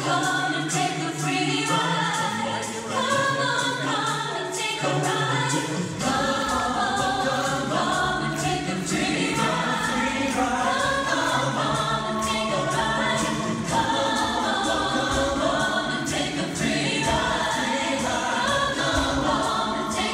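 Show choir singing an upbeat number in several parts over accompaniment; a low, steady beat comes in about six seconds in.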